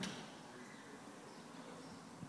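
A brief sharp click, then faint, steady background hiss.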